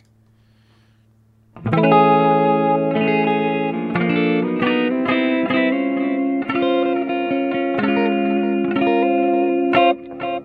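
Clean electric guitar played through the Brainworx RockRack amp-simulator plugin's Clean 530 amp and Green 4x12 cabinet, miked with a condenser. It starts about one and a half seconds in with ringing chords and single notes and cuts off sharply near the end.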